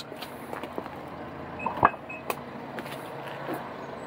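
Nissan X-Trail's electric tailgate being opened by its button: a sharp click of the latch releasing a little under two seconds in, with a couple of short high beeps around it, then the powered tailgate begins to lift.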